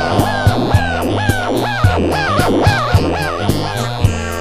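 Electronic music: drums and bass under a short swooping high tone that dips and rises, repeated about four times a second and stopping near the end.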